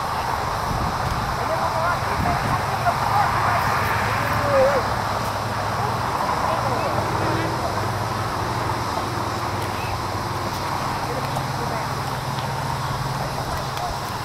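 Indistinct, distant voices of soccer players and people on the sideline calling across an open field, with no clear words, over a steady low hum.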